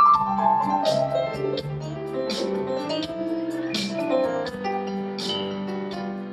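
Live band music with piano to the fore, sustained notes over a slow pulse, with a sharp bright hit about every second and a half.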